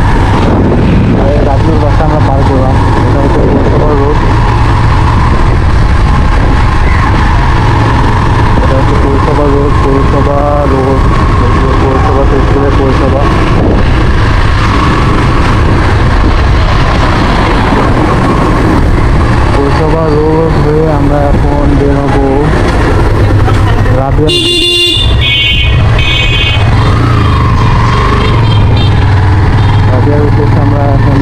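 Yamaha motorcycle engine running steadily under way, with wind rush. A vehicle horn beeps briefly about five seconds before the end.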